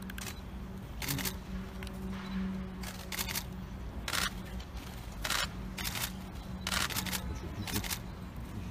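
Camera shutters clicking in short bursts, repeated about eight times at uneven intervals, over a low steady hum.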